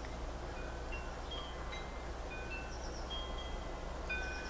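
Wind chimes ringing lightly: scattered single notes at several different pitches, each held briefly, over a steady low background hum.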